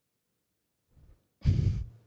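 A single short exhale close to a microphone, about one and a half seconds in, lasting about half a second.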